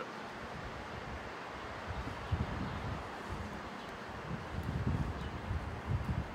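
Wind buffeting the camera microphone: low, uneven rumbling gusts that pick up about two seconds in, over a steady outdoor hiss.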